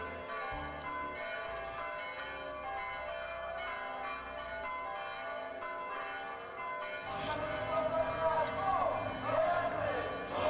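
Church bells ringing, many overlapping tones struck again and again. About seven seconds in, the voices of a crowd come in over the bells.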